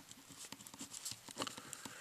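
Faint scratching and light tapping of writing on paper, in short scattered strokes, a little busier about one and a half seconds in.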